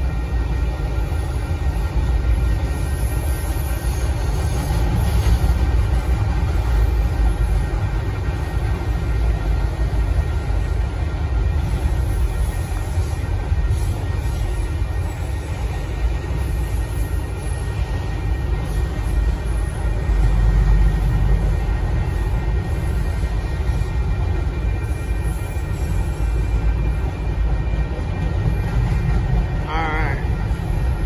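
Union Pacific mixed freight train cars rolling past with a steady, loud low rumble, faint steady high tones riding above it.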